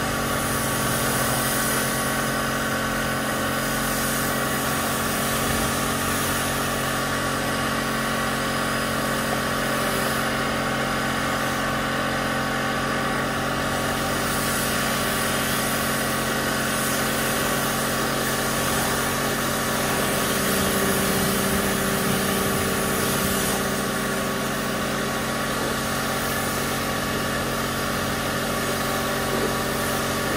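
A machine running steadily at one constant speed: a continuous hum with a steady higher whine on top, never changing in pitch or level.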